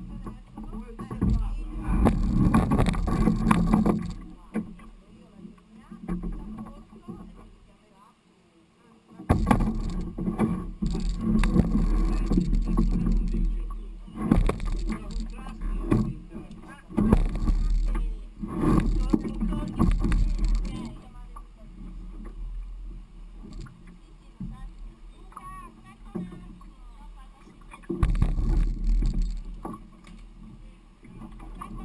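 Canoe hull scraping and knocking over riverbed stones as it is hauled through shallow water, in loud irregular spells with quieter gaps between.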